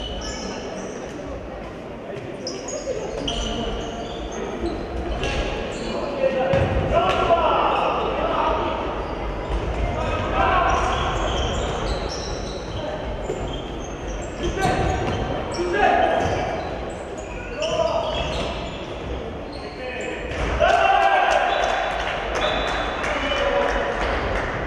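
Handball match play in a large, echoing sports hall: the ball bouncing on the wooden floor, sharp footstep and shoe noises, and players' and spectators' shouts coming in bursts.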